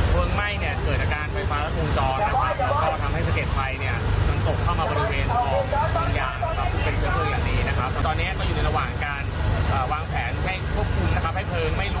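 A man speaking over the steady low drone of a fire truck's engine running.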